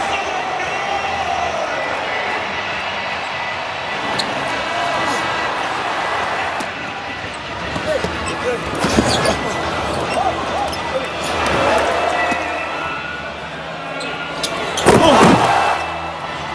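Basketball arena noise during live play: a steady crowd murmur with a basketball bouncing on the hardwood. The crowd swells louder about a second before the end as a basket is scored.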